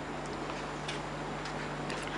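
Room tone: a steady low hum and hiss, with a few faint, irregularly spaced clicks.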